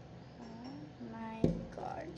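A girl's short vocal sounds with no clear words, then a single sharp knock about one and a half seconds in.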